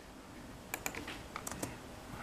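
Computer keyboard keys clicking faintly, a quick run of about six key presses in the middle.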